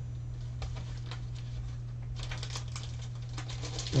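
Clear plastic packaging crinkling and rustling as it is handled, with a few light ticks early on and a dense crackle from about halfway through, over a steady low hum.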